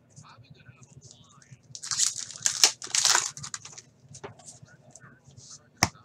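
Wrapper of a 2015-16 Upper Deck SP Authentic hockey card pack being torn open and crinkled: a run of irregular ripping and rustling about two to three seconds in, with fainter handling noise around it.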